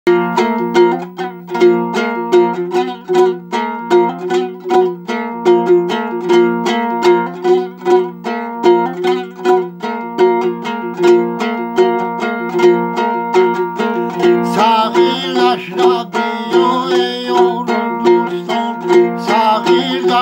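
A long-necked fretted lute strummed in a steady, repeating rhythmic pattern of plucked notes. About fourteen and a half seconds in, a man's voice starts singing over it, breaks off, and comes back in near the end.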